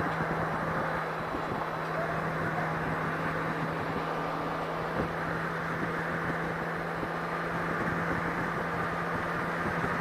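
Touring motorcycle cruising at steady highway speed: a constant low engine hum under an even rush of wind and road noise.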